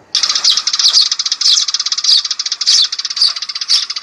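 Recorded sparrow calls played loudly through an 898 electronic bird-caller speaker, used as a trapping lure. The chirps come in a dense, rapid run and sound thin, with no bass.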